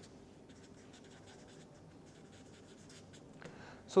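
Felt-tip marker writing on paper: a run of faint, short scratchy strokes.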